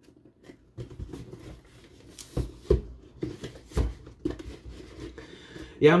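Cardboard toy box being handled and worked open by hand: irregular taps, knocks and scrapes of the card, the sharpest knocks a couple of seconds in.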